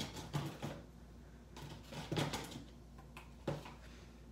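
Three short bursts of scraping, rustling handling noise: one at the start, a longer one about two seconds in, and a brief one near the end.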